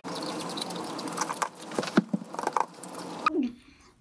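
A person chewing a chicken nugget close to the microphone, munching with small wet clicks and smacks for about three seconds before it stops.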